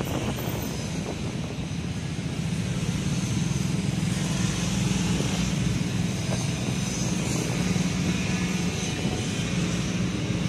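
Motorcycle engine running steadily at low speed in slow, congested traffic: a constant low hum with the noise of surrounding cars, a little louder from about three seconds in.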